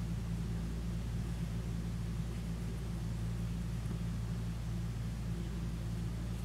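Steady low mechanical hum with a faint hiss, unchanging throughout.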